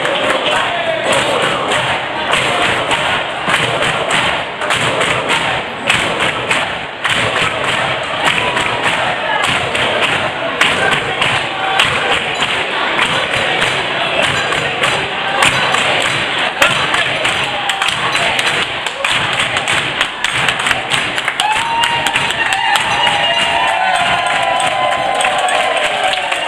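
A roomful of people clapping along and singing together, with shouts among the voices. The singing stands out more clearly near the end.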